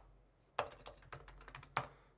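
Faint computer keyboard typing: a quick run of key clicks starting about half a second in, the last and loudest near the end.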